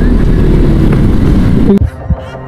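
Loud road noise on a scooter-mounted camera: a low rumble of the scooter's engine, traffic and air over the microphone as the scooter moves slowly off. It drops off sharply near the end.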